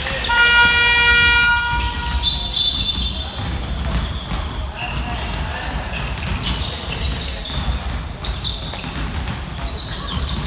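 A basketball game buzzer sounds once, a steady horn tone lasting about a second and a half just after the start. Afterwards a basketball bounces on the wooden court amid players' and spectators' voices.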